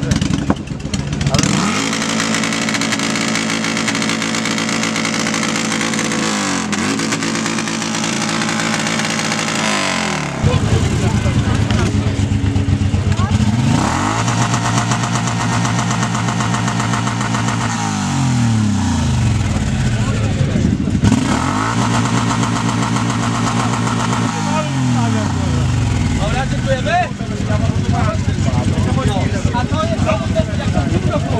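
Motorcycle engine revved hard and held at steady high revs for long stretches, getting louder about ten seconds in. Past the middle comes a run of revs rising and falling several times, over a crowd talking.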